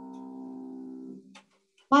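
Upright piano's final chord ringing and slowly fading, then cut off about a second in as the keys are released.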